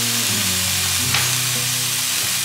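Chicken pieces, onion and Cajun seasoning sizzling in a frying pan while being stirred with a wooden spatula, with one sharp tap about a second in.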